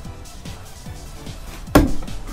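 A single thrown knife striking and sticking in a wooden target near the end, a sharp impact with a short ring, over steady background music.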